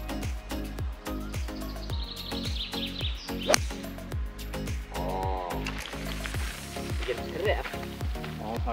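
Background music with a steady beat. About halfway through, a single sharp crack as a golf driver strikes the ball off the tee.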